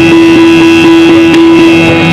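Yakshagana stage accompaniment: a steady, loud shruti drone holding one note, with a few sparse drum strokes.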